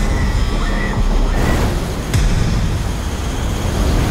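Film sound effects of a spacecraft shaking apart in a crash: a loud, continuous heavy rumble with a sudden louder hit about two seconds in.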